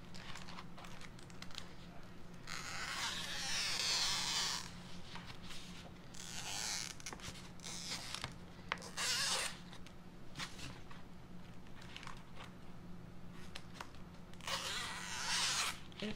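Scissors cutting through a stencil transfer sheet: a few long cuts, the longest about three seconds in and another near the end, with shorter snips and small blade clicks between them.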